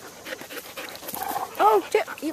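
Dog panting close by: a run of short, quick breaths. A woman's voice says "Oh" near the end.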